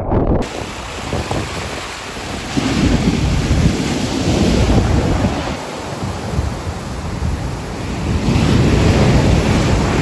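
Heavy shorebreak waves crashing and washing up onto a sand beach, with wind buffeting the microphone. The surf swells louder twice, about three seconds in and again near the end, as waves break.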